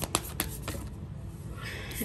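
A deck of tarot cards being shuffled by hand, with a few quick card snaps in the first second, then a softer rustle.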